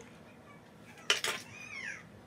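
A girl's high-pitched squeal: a sharp outburst about a second in, then a short squeal that falls in pitch.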